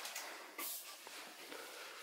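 Faint rustling of a cleaning cloth being wiped over a surface, with one brief louder swipe about half a second in.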